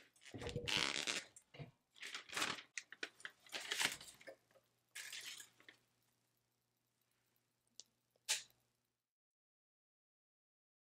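Rustling and knocking as a tumbler sublimation heat press is opened and the paper-wrapped tumbler is lifted out, followed by two short clicks about eight seconds in. The sound cuts off about a second before the end.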